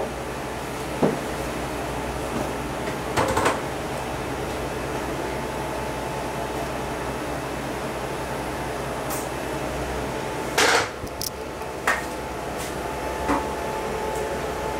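A steady low hum of equipment in a small treatment room, broken by a few short knocks and clicks as the gel bottle and laser handpiece are handled. The hum drops away about ten seconds in.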